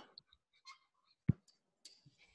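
A few faint, short clicks and taps from handwriting being put onto a computer whiteboard with a pen or pointing device, with one sharper tap a little over a second in.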